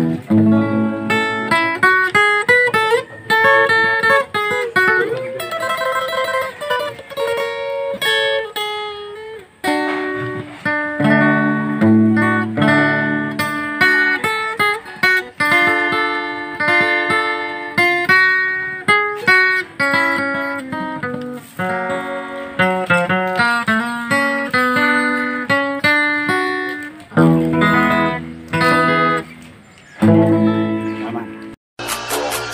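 Acoustic guitar played solo, picked melody notes mixed with chords, with a brief break about nine and a half seconds in.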